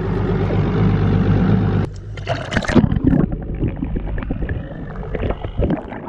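A boat's engine running at a steady hum, then, about two seconds in, water sloshing, splashing and gurgling close against a microphone held at the waterline.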